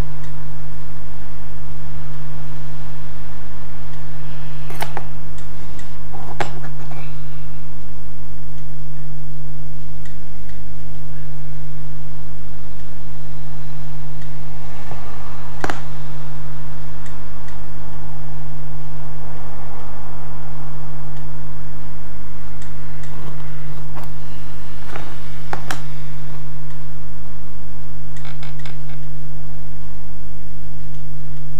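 A steady low electrical hum runs under a handful of small, sharp clicks and taps as metal tweezers and small card parts are handled and set down on a cutting mat, the clearest click about halfway through.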